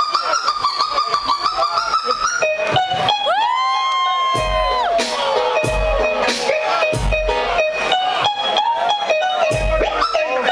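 Vinyl records worked by hand on DJ turntables: a sample whose pitch bends up and down as the record is pushed and pulled, then a held note that swoops up about three seconds in and sags away about two seconds later. Several heavy bass-drum hits come in the second half.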